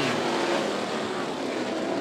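A pack of winged dirt-track sprint cars racing under power just after the green flag, their engines blending into one steady din.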